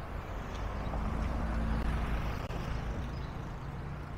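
A car drives past at low speed. Its engine hum and tyre noise build to the loudest point about two seconds in, then fade.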